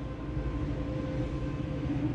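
Steady low rumble with a faint, steady hum and no distinct events.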